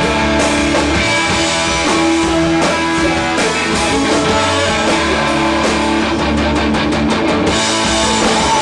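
Live indie rock band playing a guitar-led instrumental passage with electric guitars, bass and drums, with a fast run of even strokes near the end.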